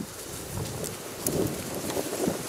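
Wind buffeting the microphone, with a gloved hand rustling through dry crop stubble and loose soil.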